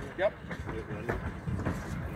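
Passenger train coaches rolling slowly along the track, a steady low rumble.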